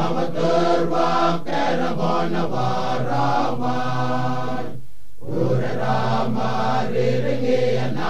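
Male choir chanting in unison, phrase after phrase, with a brief pause between phrases about five seconds in.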